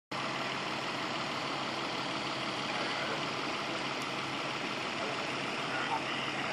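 An engine running steadily at idle, a constant drone with a hiss over it.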